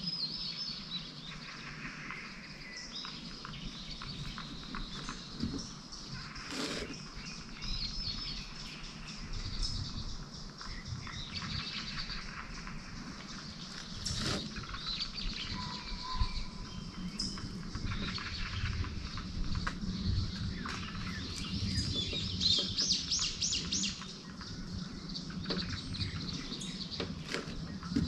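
Several wild birds singing and calling at once, mostly short high chirps and whistles, with a fast trill of rapidly repeated notes near the end. Soft low thuds run underneath from about a third of the way in.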